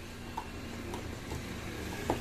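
A few faint clicks as a mains plug is handled and pushed into a power socket, over a steady low background hum.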